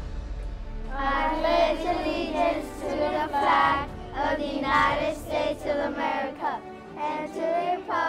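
A group of children reciting the Pledge of Allegiance together in unison, starting about a second in, in short rhythmic phrases.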